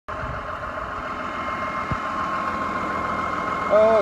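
Tractor engine idling, a steady even hum.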